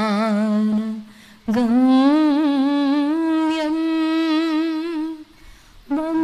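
A woman's solo voice through a microphone carries a slow, ornamented melody in long held notes, unaccompanied. It pauses twice for breath, about a second in and near the end.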